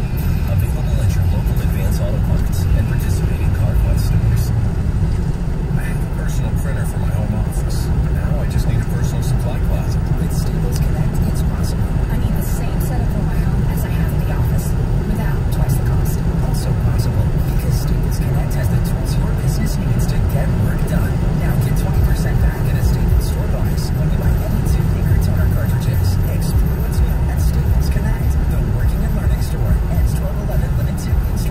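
Steady low road and engine rumble inside a car cabin at highway speed on a wet road, with a radio playing underneath.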